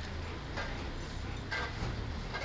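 A dog panting with its mouth open: a few short, irregular rushes of breath over low street rumble.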